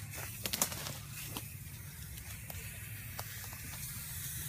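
Buck Bomb aerosol scent can locked down and emptying itself: a steady spray hiss, with a few sharp clicks in the first second and a half.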